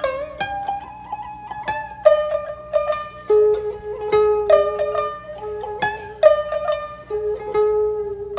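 Sangen (three-string shamisen) and koto playing together in traditional Japanese jiuta style: a steady run of plucked notes that ring briefly, some of them bent in pitch.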